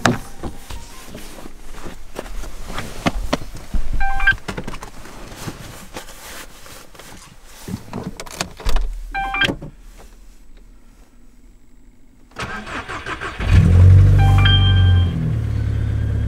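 Volkswagen Golf engine cold-started in winter. The starter cranks briefly a little after twelve seconds in, the engine catches cleanly with a loud flare and then settles to a steady idle. Before the start there are clicks and rustling from getting into the car, and short electronic dashboard chimes sound a few times.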